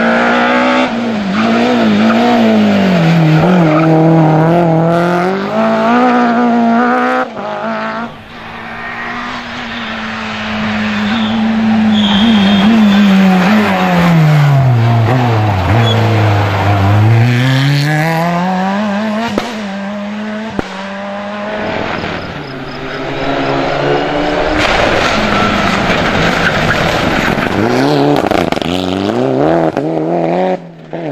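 Rally cars passing one after another on a tarmac stage: a BMW E30 M3, then a Renault Clio, then a Mitsubishi Lancer Evolution near the end. Each engine revs up through the gears and drops in pitch on the downshifts into the bends. Mid-way one car slows right down and pulls away again with rising revs.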